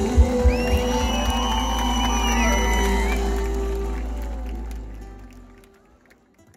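Live pop band ending a song: a few drum hits, then a final chord held over a sustained bass note, with cheering from the crowd, fading out over the last two seconds.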